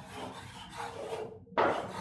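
Chalk scraping on a chalkboard as a word is written by hand: soft strokes, then a louder stroke about one and a half seconds in.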